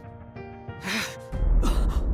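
Dramatic background music with held notes, under a man's sharp gasp about a second in and another short breath near the end. A deep low rumble swells in just past the middle and stays loud.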